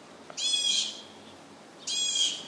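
An animal calling twice, each a short high-pitched call, the second about a second and a half after the first.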